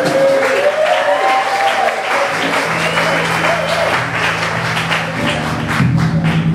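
Audience applauding as a live rock song ends, while the band's instruments still sound: gliding tones early on, then a steady low bass note from about halfway, and a pulsing rhythm starting up near the end.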